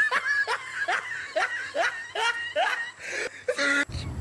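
A person laughing in a run of short, rising bursts, about two a second, cut off abruptly just before the end.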